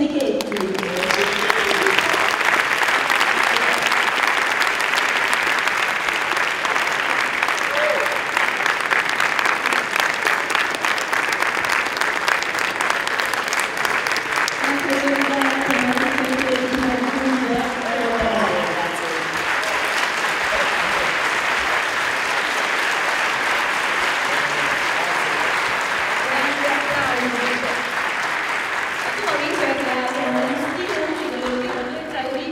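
A large theatre audience applauding. The clapping starts all at once and eases slightly after about eighteen seconds.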